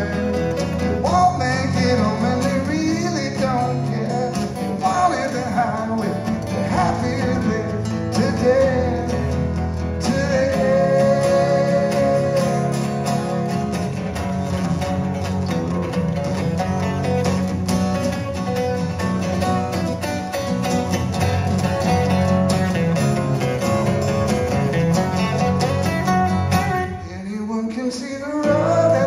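Live acoustic music: two acoustic guitars strummed and picked together, with a sung vocal at times.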